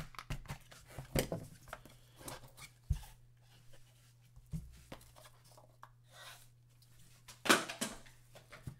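Box cutter slicing the seal of a small cardboard trading-card box, a run of short clicks and scrapes, then light knocks and rustling as the box is opened and set down, with a louder rustle near the end.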